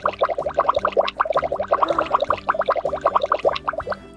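A rapid bubbling sound, about ten quick pops a second, as a stream of bubbles is blown from a bubble wand; it stops just before the end, over faint background music.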